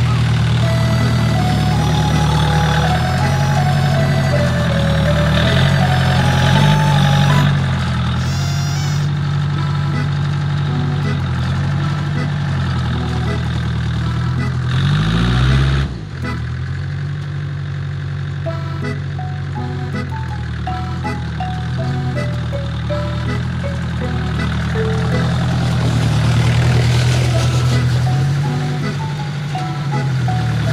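Small tractor engine running while it pushes snow with a rear leveling blade, its pitch rising and falling with the revs. The level drops abruptly about halfway through. Background music with a simple stepping melody plays over it.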